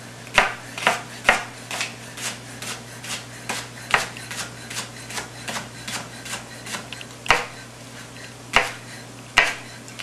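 Chef's knife slicing a leek on a wooden cutting board with a rocking motion: sharp knocks of the blade on the board about two a second, thinning out after the halfway point, with a few louder knocks near the end.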